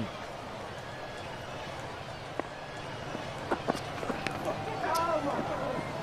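Steady murmur of a cricket stadium crowd. A few faint sharp knocks come about two-thirds through, as the bat edges the ball, and voices rise from the crowd near the end.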